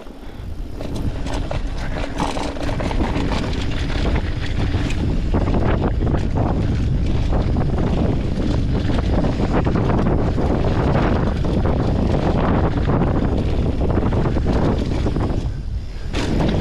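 Wind buffeting the camera microphone, with tyre roar on a dirt trail and knocks and rattles from a mountain bike riding fast downhill. It builds over the first few seconds as the bike gathers speed, then stays steady, easing briefly near the end.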